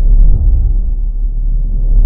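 Deep, loud cinematic rumble of an intro sound effect, swelling just after the start and again near the end.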